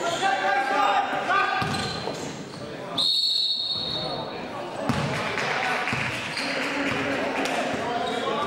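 A referee's whistle blown once, a single high, steady blast about a second long, about three seconds in. A basketball bounces on the court around it.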